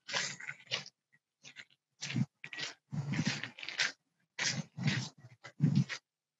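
Rustling and crunching from a phone being carried by someone walking along a garden path. It comes in irregular short bursts with abrupt gaps of dead silence, chopped up by the video call's noise gating.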